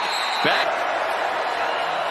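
Steady noise of a large stadium crowd at a college football game, heard through the TV broadcast audio, after a brief word of commentary.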